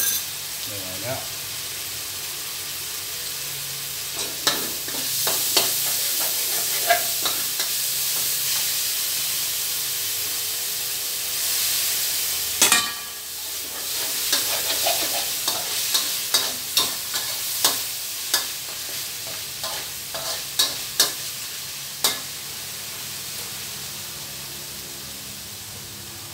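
Minced meat and chili–shrimp paste frying in a steel wok with a steady sizzle. A metal spatula scrapes and clicks against the wok at irregular intervals from a few seconds in; the clicks stop a few seconds before the end, while the sizzling goes on.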